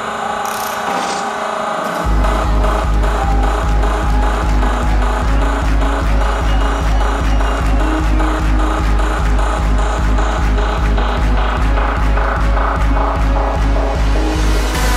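Hardstyle electronic dance music played at high volume. About two seconds of melody without drums, then a heavy kick drum drops in and pounds a steady fast beat, about two and a half kicks a second.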